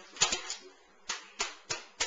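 Plastic ramen noodle packet crinkling as someone struggles to tear it open: about half a dozen sharp crackles, irregularly spaced.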